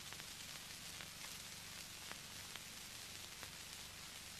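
Faint steady hiss with scattered light crackles: the background noise of an old film soundtrack.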